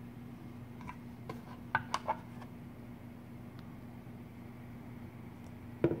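Light clicks and taps from a breadboard circuit being handled and tilted by hand, with three sharper clicks close together about two seconds in and a dull knock just before the end, over a steady low hum.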